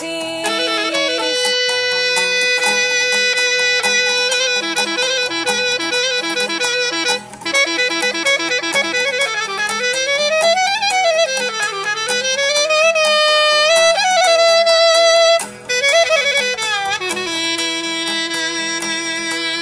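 Clarinet playing a traditional Greek folk melody with long held notes and ornamented rising and falling runs, over a strummed laouto keeping a steady rhythm. The clarinet breaks off briefly twice, about seven seconds in and again about fifteen seconds in.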